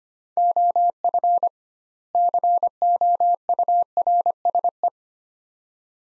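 Morse code sent as a single steady mid-pitched beep keyed on and off at 25 words per minute: two words, with a longer pause between them, beginning about half a second in and ending near five seconds. The two words spell "of course".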